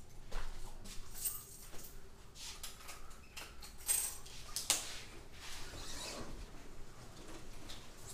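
Faint movement and handling noise: scattered soft clicks, scrapes and rustles, with one sharper click a little past halfway.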